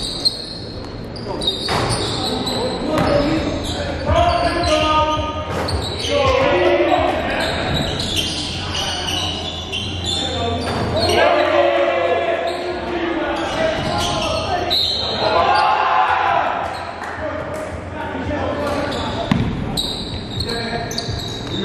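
Basketball game sound echoing in a gymnasium: a ball bouncing and players calling out on the court.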